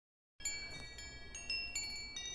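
Chimes ringing: clear high metallic tones struck one after another, each left to ring on and overlapping the others, starting about half a second in.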